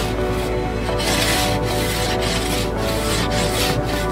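Frost being scraped off a car windscreen, heard from inside the car: a run of scraping strokes, about two a second, over steady background music.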